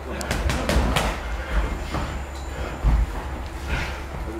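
Boxing gloves smacking during sparring: a quick run of sharp hits in the first second, then a heavy thud near three seconds in.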